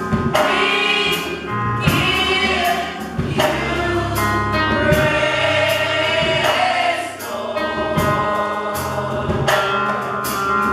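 Gospel choir singing in harmony, the sung phrases swelling and breaking every second or two, over keyboard and a steady drum beat.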